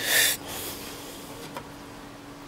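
A short, sharp exhale of breath through the nose, lasting about a third of a second. After it comes quiet room tone with a faint steady hum.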